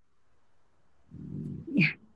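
Near silence for about a second, then a short low rumble, and a woman's voice starting to speak near the end.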